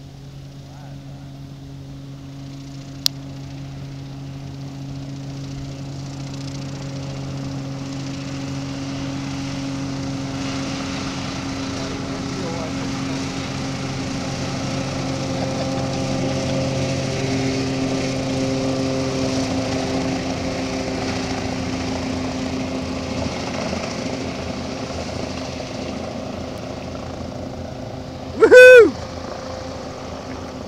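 Hovercraft's engine and propeller drone, growing louder as it approaches and passes close, its pitch dropping as it goes by, then fading away. Near the end, a brief loud call that rises and falls in pitch cuts in over it.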